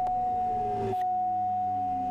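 Quest Kodiak 100's PT6A turboprop engine winding down after fuel cut-off, heard as a tone falling slowly in pitch over a low hum, under a louder steady high tone.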